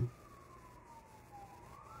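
A faint siren wailing: one tone falls slowly in pitch, then starts to rise again near the end.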